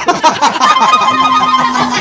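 A man laughing loudly and heartily in a sudden burst, with a few steady held musical notes sounding under it in the second half.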